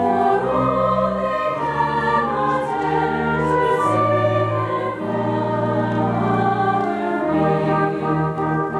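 Chorus of young women's voices singing in harmony, accompanied by a pit orchestra of strings; long held notes over a bass line that moves to a new note about every second.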